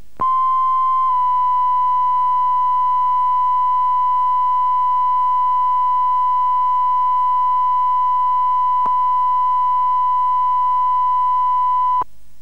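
BBC1 line-up test tone: a steady 1 kHz sine tone broadcast after closedown, starting abruptly and holding at one pitch. A faint click comes about nine seconds in.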